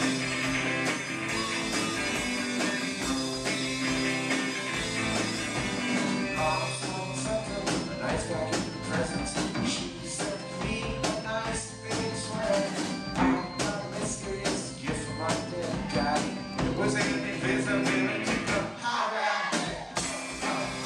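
Live rock band playing electric guitar, keyboard and drum kit, with frequent cymbal hits from about six seconds in and a short drop in the sound just before the end.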